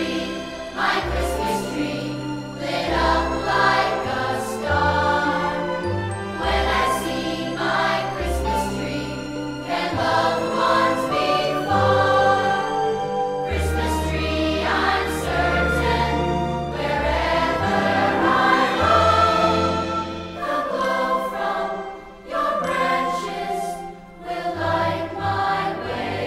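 A choir singing a Christmas song over instrumental accompaniment with sustained low bass notes.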